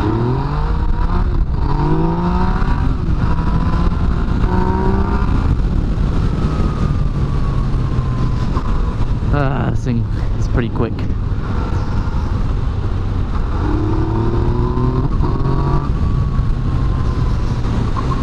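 Yamaha FZ-09's inline-three engine pulling through the gears: its pitch climbs in several runs with short breaks between them, then falls away as the throttle eases off. Heavy wind rush on the microphone runs underneath.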